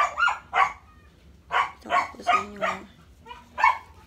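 A dog barking, about eight short barks in uneven groups.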